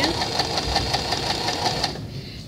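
Domestic sewing machine running at an even speed, stitching a curved seam, with a rapid, regular clatter from the needle mechanism.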